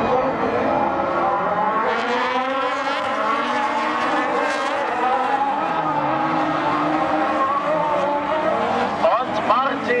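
Several autocross race cars' engines revving on a dirt track, their pitches overlapping and rising and falling as the cars accelerate and lift through the corners.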